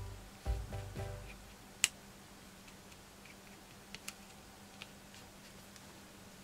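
Soft guitar music that fades out about a second in, then a few light clicks and taps from metal tweezers handling paper embellishments on a table. The sharpest click comes about two seconds in, with a couple more near four seconds.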